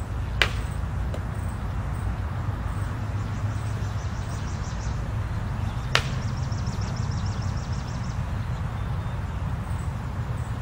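Two sharp clacks of basket-hilted broadswords meeting in a practice drill, one just under half a second in and one about six seconds in, over a steady low rumble.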